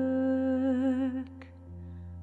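Song: a woman's voice holds a long note with vibrato over a sustained low backing. A little over a second in the voice fades out, leaving the quieter backing.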